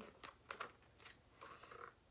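Faint rustle and a few light taps of a large hardcover picture book's page being turned by hand.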